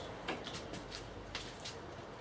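Five or so light, irregular clicks and ticks over a faint steady low hum.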